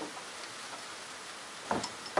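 Faint clicks and ticks of a drill chuck being hand-tightened onto a homemade spur drive, over low room hiss, with one sharper click near the end.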